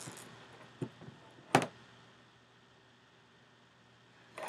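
Two short clicks, the second one louder, as a sensor's ground wire lead is plugged in at the bench, followed by faint room tone.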